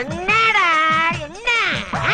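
A long, wavering cat-like meow, then a shorter one near the end, over background music.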